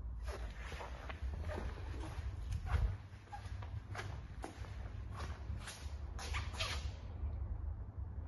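Footsteps on a hard tiled floor, a dozen or so irregular steps, over a steady low rumble.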